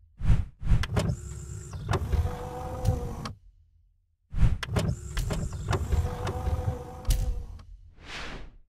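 Logo-animation sound effect for a news channel's closing ident: a rush, then a steady mechanical whirring hum with clicks, lasting about three seconds. It plays twice with a short gap between, and a brief rush comes at the very end.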